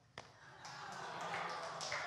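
Soft, diffuse murmur of an audience reacting to a joke's punchline, rising from about half a second in, after a single brief tap just after the start.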